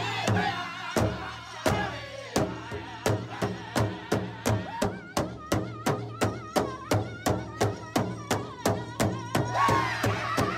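Powwow jingle dance song: a drum struck in a steady beat under high, wavering singing voices. The beat is slower for the first three seconds, then quickens to about three strokes a second.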